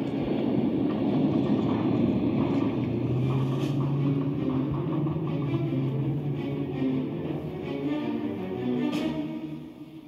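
Rumbling sound effects of a sailing ship being dragged down beneath the waves, mixed with dramatic music holding low notes. The rumble is continuous and fades out near the end.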